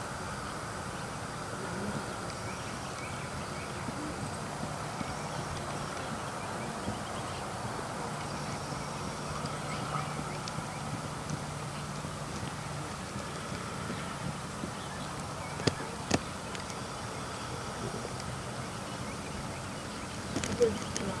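A horse trotting on a sand dressage arena, its hoofbeats soft and faint under steady outdoor background noise with a low hum. Two sharp clicks half a second apart come near the end.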